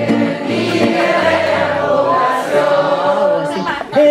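Many voices singing a chorus together over a strummed acoustic guitar: a live audience singing along with a male singer.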